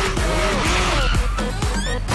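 Loud trailer music mixed with a motor scooter skidding, its tyres squealing.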